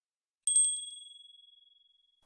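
A single bright, high-pitched ding sound effect marking a title card, starting about half a second in. A few quick clicks come at its onset, then it rings out and fades away over about a second and a half.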